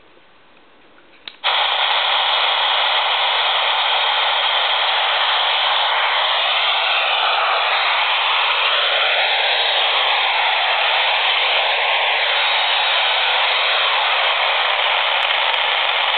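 A handheld AM radio, tuned to an empty spot on the band, switches on about a second and a half in and gives a loud, steady hiss of static. Faint whistles wander up and down in pitch through the middle. The static is radio-frequency interference from the laptop below it, described as quite extensive radio fields around this computer.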